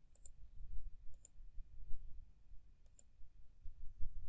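A handful of faint, sharp clicks at a computer, one of them a close pair, over a low steady hum of room noise.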